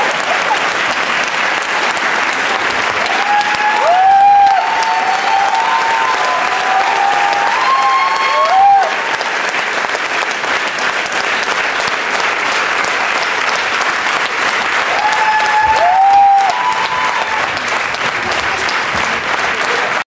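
Audience applauding steadily, with a few voices whooping above the clapping about four seconds in, again around seven to nine seconds, and near sixteen seconds.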